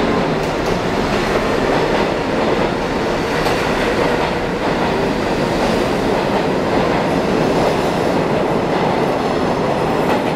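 New York City subway train of stainless-steel cars running past the station platform, its steel wheels on the rails making a steady, loud noise.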